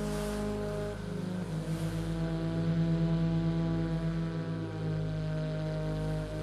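Ambient music drone: a low sustained chord of held tones. A fast tremolo pulses in the bass from about a second in until near the end.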